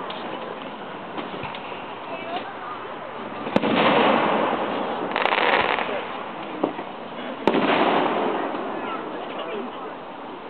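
Fireworks bursting: two sharp bangs about four seconds apart, the first near the middle and the second late on, each followed by a rush of noise lasting about a second.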